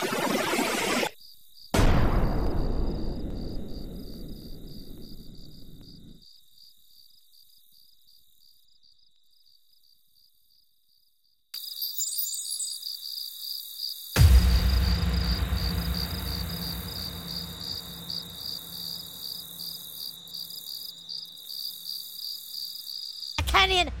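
Night-time cricket chirping, a steady rapid pulsing high trill, interrupted by a silent gap in the middle. Two deep booms, one about two seconds in and a louder one about fourteen seconds in, each die away slowly over several seconds.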